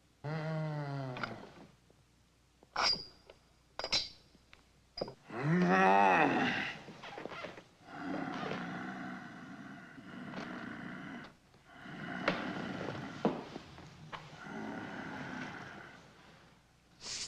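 A man's deep, wordless groans and grunts as the creature stirs awake, with one louder drawn-out groan about six seconds in. A few sharp clicks fall around three to four seconds.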